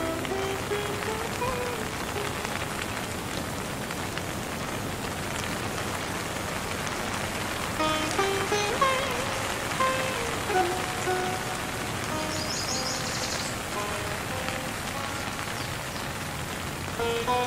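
Steady rain sound under slow instrumental Indian music: plucked string notes, some sliding in pitch, few in the middle and picking up again about halfway through, with a brief high flutter of notes near the end.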